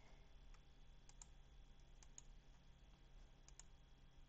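Faint computer mouse clicks, some single and some in quick pairs, over quiet room hum.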